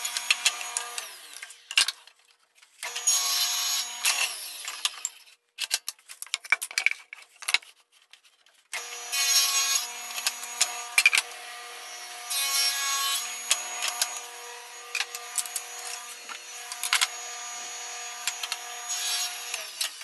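Table saw spinning a thin-kerf 7-1/4-inch circular saw ripping blade, cutting boards in several passes. A steady motor and blade whine rises as the blade bites into the wood. Two short runs near the start are followed by a pause with a few clicks, then a long run from a little before halfway.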